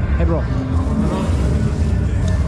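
Indistinct voices of people close by over a steady low rumble.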